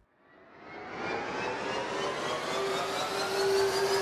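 Whooshing riser sound effect for a title animation, swelling up over about a second with tones gliding steadily upward over one held note, and ending in a sharp hit.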